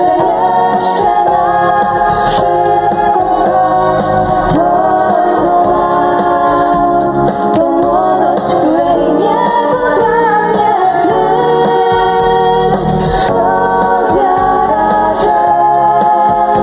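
Live music: two women singing into microphones with a small band accompanying them.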